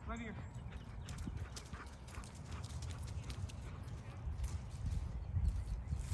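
A short call right at the start, then a dog running across grass and dry leaves: quick, irregular footfalls and leaf crunches, over a low wind rumble.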